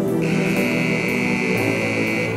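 An arena buzzer sounds one steady tone for about two seconds, starting a moment in. It marks the end of the two-and-a-half-minute cutting run. Background music plays underneath.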